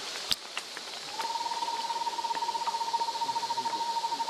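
A single sharp click, then about a second in a steady, rapidly pulsing trill at one pitch begins and holds on. A constant high hiss of forest background runs underneath.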